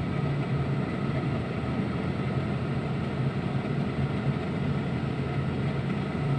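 Steady engine drone and road noise inside the cabin of a car driving in traffic.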